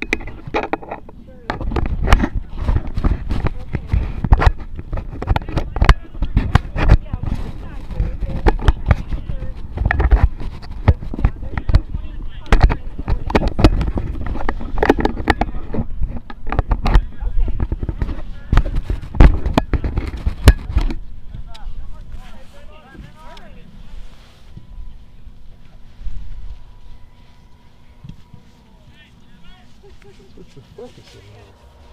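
Handling noise on a camcorder's built-in microphone: dense, irregular knocks and rumbles as the camera is touched and moved. It stops about two-thirds of the way in, after which only faint distant voices remain.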